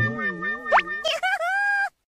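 Outro jingle sound effects: a wobbling pitched tone, a quick rising whistle about three-quarters of a second in, then a held note that bends and steadies before cutting off suddenly near the end.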